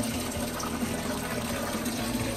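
Rosé wine pouring steadily out of a squeezed plastic wine bag into a large plastic container that already holds liquid.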